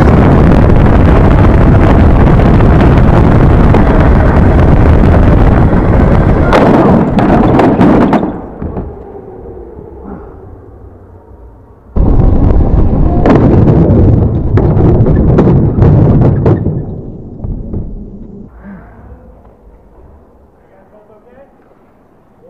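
Onboard sound of an indoor go-kart at speed: engine and wind noise overloading the camera microphone into a loud, distorted rush, which drops away about eight seconds in. It returns just as loud at about twelve seconds with a string of sharp knocks as the kart crashes into the track barriers and goes up off the ground, then dies down.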